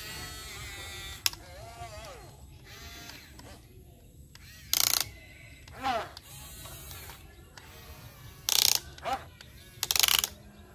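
Small electric motors and plastic gears of a Huina remote-control toy excavator whirring and ratcheting as the boom and bucket work. Several short, louder bursts come in the second half.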